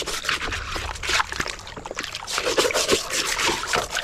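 A stiff plastic scrub brush rubbing over a plastic toy car under muddy water in a plastic tub, with the water sloshing and trickling in irregular strokes.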